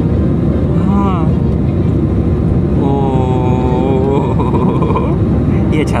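Steady rumble of a jet airliner's engines and airflow heard inside the passenger cabin during the climb after take-off. A person's voice makes a short sound about a second in and a longer held tone from about three to four seconds.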